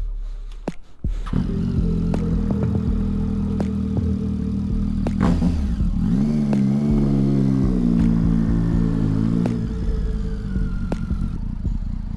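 Triumph Street Triple 675's three-cylinder engine starting about a second in and idling, then rising and falling in revs from about six seconds in as the bike moves off.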